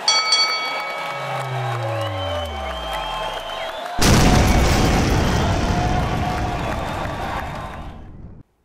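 Sound effects: a boxing-ring bell struck once at the start rings on and fades, while a deep tone slides steadily downward. About four seconds in, a sudden loud boom-like burst of noise hits and dies away over about four seconds as the channel's intro sting.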